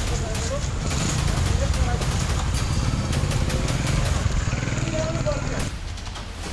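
Street noise: a vehicle engine running with a steady low rumble, mixed with indistinct voices.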